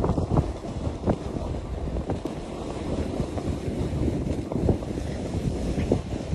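Wind rushing over the microphone of a camera carried at speed down a groomed ski slope, with the scrape of edges on packed snow and many brief clicks of chatter.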